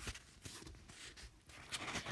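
Quiet pause between spoken lines: faint room tone with a few soft small noises, slightly stronger near the end.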